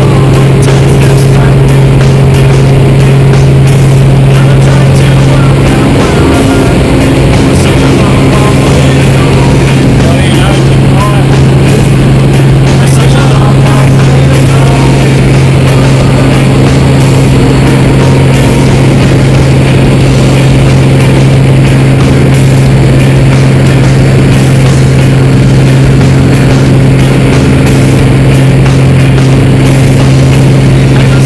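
A light high-wing aircraft's engine and propeller running steadily at takeoff and climb power, with heavy wind rushing over an outside-mounted camera. The drone changes slightly about six seconds in.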